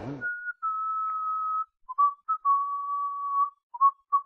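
A short tune whistled in single clear notes: a brief high note, then a long held note, a few quick notes, and a second long held note, with short notes again near the end.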